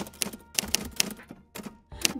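Typewriter sound effect: a quick, irregular run of key clacks, pausing briefly before a last clack or two near the end.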